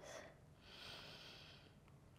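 A faint, soft breath out lasting about a second over near silence.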